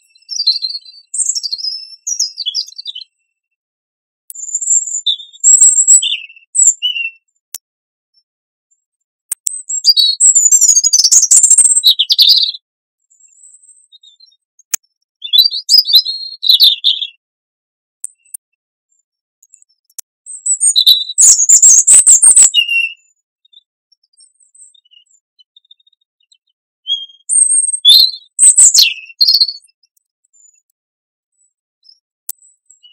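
European robin singing: about six short, high-pitched warbling phrases, each a second or two long, separated by pauses of a few seconds.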